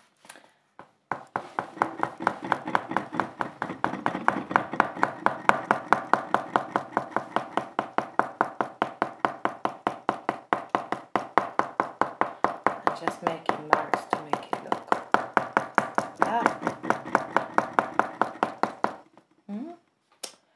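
Cadmium red oil pastel stick worked onto paper in short, quick hatching strokes, about five a second in a steady rhythm, starting about a second in and stopping near the end.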